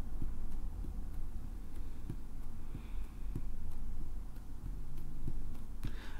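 Fingertips tapping lightly on a tabletop as single fingers are lifted and set back down, a few faint irregular taps over a steady low room hum.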